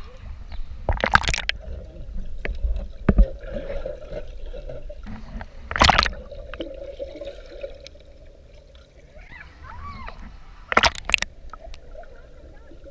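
Water heard through a waterproof camera held underwater in a hot tub: muffled sloshing and gurgling over a steady low hum. Three short, loud splashes break in, about a second in, near the middle and near the end.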